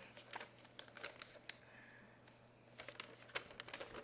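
Faint rustling and crinkling of a paper packing slip being handled, in scattered short bursts with light clicks and taps, quietest about halfway through.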